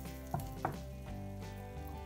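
Butter sizzling quietly as it melts and foams in a hot cast iron skillet, with two short ticks about a third and two-thirds of a second in.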